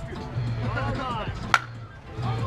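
A softball bat strikes a pitched ball once, a single sharp hit about one and a half seconds in.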